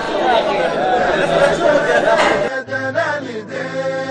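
Many men talking at once in a large echoing hall. About two and a half seconds in, this cuts abruptly to a man chanting a melody over a steady low drone.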